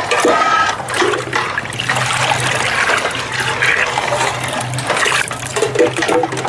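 Liquid sloshing and splashing in a large steel pot of iced drink as a metal jug is dipped in and scooped through it, with a steady low hum underneath.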